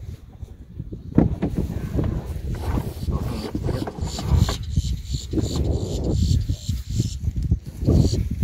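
Wind buffeting the microphone, with knocks and bumps as the clear canopy of a Pivotal BlackFly is handled and swung down closed over the seated occupant.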